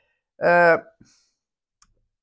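A woman's held hesitation vowel, about half a second long at a steady pitch, followed by a faint click from the mouth area.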